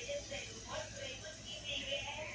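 Indistinct background speech, with a low steady hum underneath.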